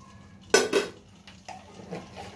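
Metal kitchen utensils clattering: one sharp, loud clank about half a second in, followed by a few lighter knocks.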